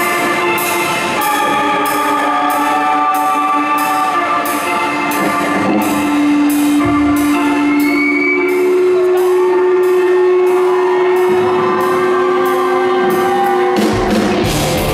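Live rock band playing a song intro: drums keep a steady cymbal beat, about three strokes a second, under long held electric guitar notes. Near the end the full band comes in with distorted electric guitars.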